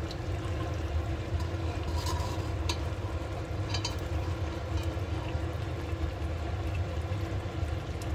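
A metal ladle stirring and scraping through a thick mutton curry in an aluminium pot, with a few short clinks of the ladle against the pot in the first half, over a steady low hum.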